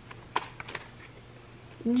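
Tarot cards being handled: a few soft clicks and rustles as a card is drawn from the deck.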